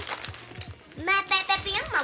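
A high-pitched voice, wordless or unclear, starting about a second in and gliding up and down in pitch.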